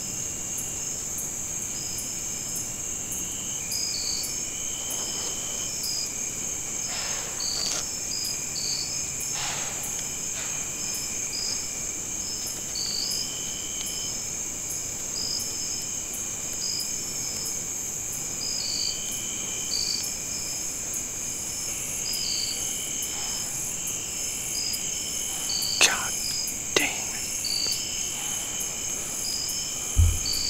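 Evening insect chorus of crickets: a steady high trill with short chirps repeating about once a second over it. Near the end, two sharp, loud sounds about a second apart stand out above the chorus.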